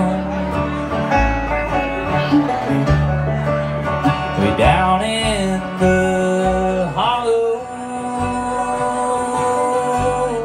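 Live bluegrass band playing a slow song on acoustic guitar, mandolin, upright bass and banjo, with a man's voice singing long sliding notes about halfway through and again a couple of seconds later.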